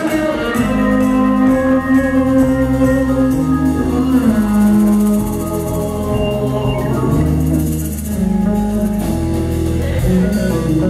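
A live rock band playing: electric guitars, electric bass, drums and keyboard, with held notes over a moving bass line.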